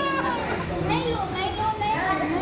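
Children's and adults' voices around, with a child's high-pitched cry that stops just after the start.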